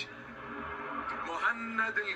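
Football TV broadcast audio: a commentator's voice over the steady murmur of a stadium crowd.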